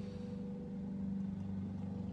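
A steady low hum with no speech.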